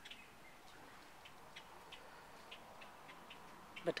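Quiet outdoor ambience with faint, irregular short ticks, a few a second.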